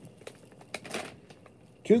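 Faint crinkling and a few light clicks of grocery packaging being handled, with a short soft rustle about a second in.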